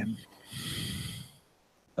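A person's breath close to a microphone, about a second long, just after a spoken word ends.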